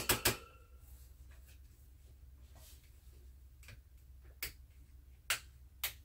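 Sharp clicks and taps from handling a hanging octagonal softbox light as it is tilted down by hand: a quick cluster at the start, then four separate clicks over the last few seconds. A faint steady low hum runs underneath.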